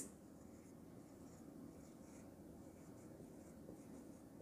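Faint scratch of a marker pen writing a word on a whiteboard.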